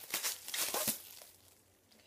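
Cellophane wrap crinkling and crackling as it is pulled off and crumpled by hand, busiest in the first second, then dying away.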